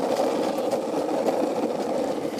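Longboard wheels rolling over a concrete sidewalk, a steady rumble.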